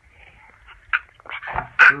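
A toddler's short babbling sounds: a few quick bursts of voice that grow louder near the end.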